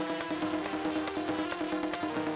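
Instrumental interlude: a harmonium holds a buzzy reed chord over regular drum strokes.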